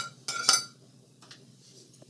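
Metal cutlery clinking against a ceramic plate while leftover food is scraped off: two ringing clinks about half a second apart, then only faint handling.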